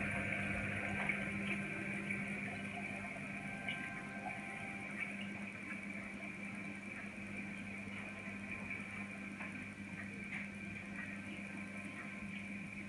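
Steady low hum of reef aquarium pumps and sump equipment, with a faint hiss and a few small ticks, easing slightly in the first couple of seconds.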